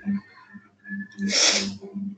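A single short, sharp burst of breathy noise from a person about one and a half seconds in, over a faint low hum that pulses evenly.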